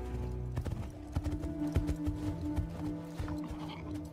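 The episode's soundtrack: held orchestral notes over an irregular run of low thuds, like the footfalls of a galloping mount.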